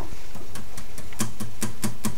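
Acoustic guitar being lightly strummed as the song's intro begins: a run of quick, muted strokes ticking about five or six times a second, with faint notes sounding near the end.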